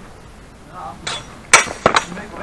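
Steel training longswords clashing blade on blade: a lighter clash about a second in, then a loud ringing clang and two more quick clangs close together near the end.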